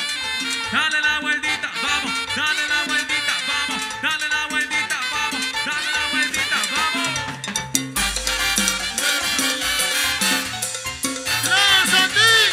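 A live Latin dance orchestra playing an instrumental passage with a steady beat: brass and saxophones over congas and upright bass, with a deep bass note about eight seconds in.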